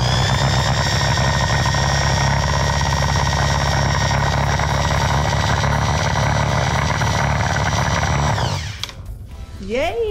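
Rebuilt Delco-Remy heavy-duty starter motor free-running off a truck battery through jumper cables: it spins up quickly, runs at a steady high whine with a low electrical hum for about eight and a half seconds, then winds down in pitch when the current is cut.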